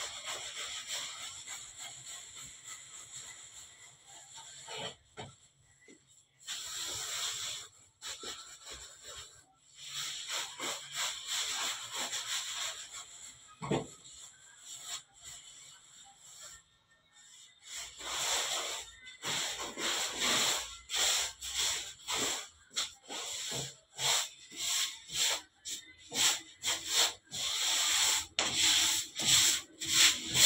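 Hands rolling and pressing logs of bread dough on a flour-dusted worktable, a dry swishing rub with each stroke. The strokes come in short runs at first, then faster and louder in the second half, about two a second.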